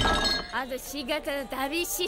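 A drinking cup banged down hard on a wooden counter right at the start, with a short clinking ring, followed by a woman's voice speaking heatedly.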